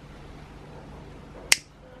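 A single sharp click of an inline lamp-cord switch being flicked, about one and a half seconds in.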